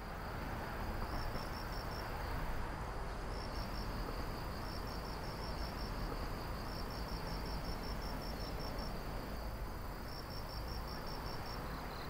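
Crickets chirping in repeated runs of quick, high pulses over a steady high insect trill, with a continuous rushing ambient hiss beneath.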